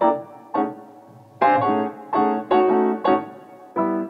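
Instrumental piano music: chords struck one after another, about seven in four seconds, each starting sharply and left to ring and fade, with a few held longer in the middle.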